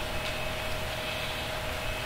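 Steady background room noise during a pause in speech: an even hiss with a faint steady hum.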